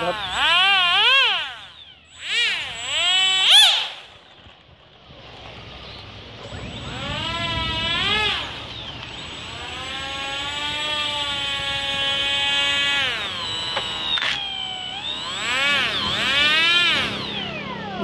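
Electronic warbling sound effects: rapidly wavering siren-like tones in short bursts, then a long held tone from about seven seconds in that glides down near the fourteen-second mark, and another warbling burst near the end.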